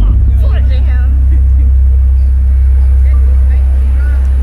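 Live band music carried by a loud, sustained deep bass, with brief vocal phrases over it.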